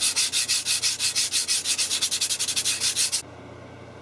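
Hand scrubbing of an etched copper-clad circuit board to rub off the toner resist, in fast, even back-and-forth scratchy strokes that stop about three seconds in.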